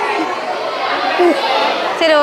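Overlapping chatter of several voices, with no single clear speaker.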